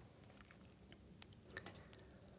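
Near silence: faint room tone with a few soft, short clicks, one a little past halfway and several close together near the end.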